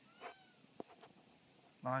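A house cat meowing once, short, its pitch rising and then falling. A single sharp click follows just before a second in.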